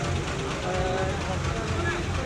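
Several people's voices talking over one another close by, over a steady low rumble.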